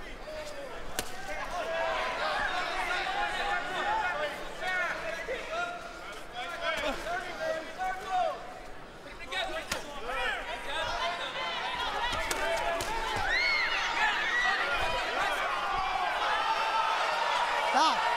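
Arena crowd shouting and calling out during a boxing round, many voices at once, with a few sharp smacks of gloves landing.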